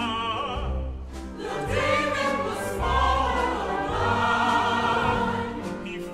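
An operatic baritone sings with a wide vibrato over a symphony orchestra. From about two seconds in, a chorus joins with sustained chords, over low orchestral bass notes that pulse about once a second.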